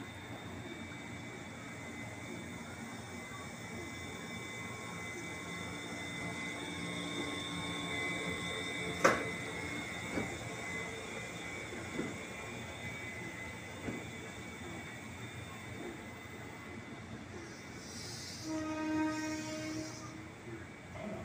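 KRL electric commuter train passing close by through flooded track: a steady running rumble with a high, even whine and a few sharp clicks, the loudest about nine seconds in. Near the end a short horn note sounds for about a second.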